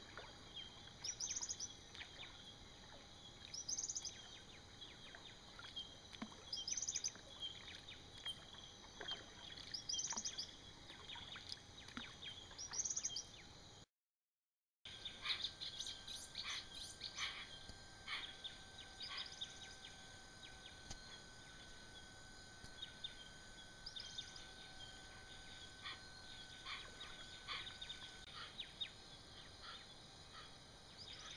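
Faint rainforest dawn chorus. For the first half a bird repeats a short, rising, high call about every three seconds. After a brief dropout, hoatzins call, a quick run of short calls among other birds, over a steady high tone that holds for about twelve seconds.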